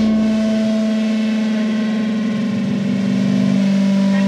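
Electric guitar through its amplifier droning one sustained, steady note, left ringing once the drums have stopped at the end of a song.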